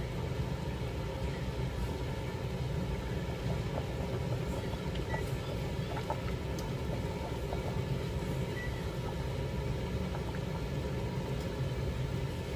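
Spaghetti in a stainless steel pot of water at a rolling boil: a steady bubbling rumble, with a few faint ticks.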